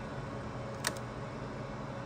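Steady hum of running rack-mounted servers and network gear, their cooling fans droning with a low tone. A single sharp click just under a second in.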